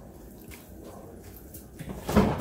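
Half a lime squeezed by hand over a salad bowl: faint squeezing sounds with drips of juice.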